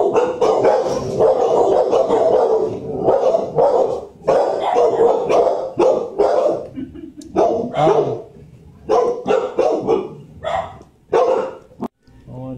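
Shelter dogs barking repeatedly in a kennel: a dense run of barks for the first couple of seconds, then separate barks about every half second.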